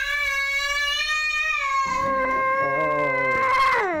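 A young child's long, high scream, one held note that drops in pitch just before it ends.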